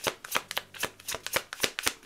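A tarot deck being shuffled by hand: a quick, even run of light card clicks, about seven a second.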